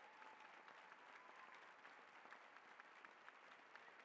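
Faint audience applause, a soft patter of many hands clapping.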